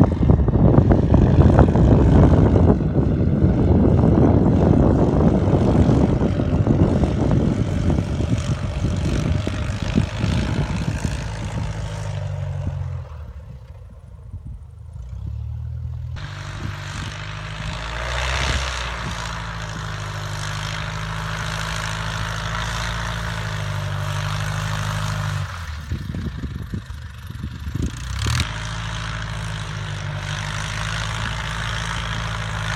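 Piston engine and propeller of a Cub-style STOL bush plane flying low and slow: loud and dense for the first dozen seconds as it passes close, then a quieter, steadier engine note after a dip in level about a third of the way in.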